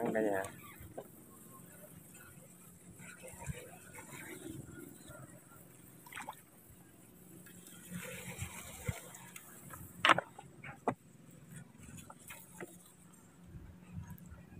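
Faint water lapping and sloshing around a small boat on floodwater, with a few sharp knocks around ten seconds in.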